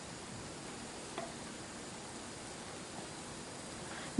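Olive-oil batter fritters frying in a pan: a faint, steady sizzle as the oil starts to bubble. There is one small click about a second in.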